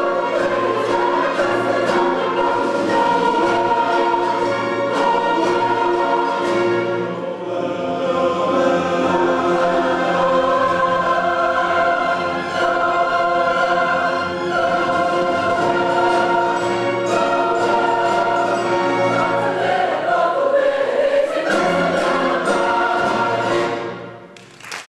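Large mixed choir singing with a full symphony orchestra in a continuous, loud passage.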